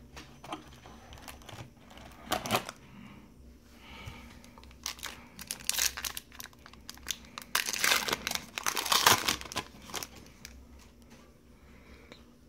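Foil trading-card pack wrapper being torn open and crinkled in several bursts, loudest about eight to nine and a half seconds in, with light clicks of cards being handled between.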